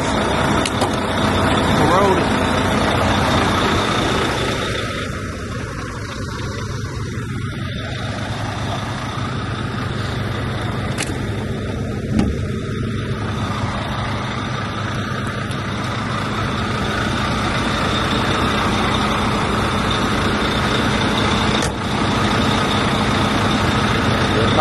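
Semi truck's diesel engine idling steadily just after being jump-started, with a single sharp click about halfway through.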